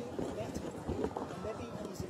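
Indistinct chatter of many overlapping voices, with scattered short clicks and knocks mixed in.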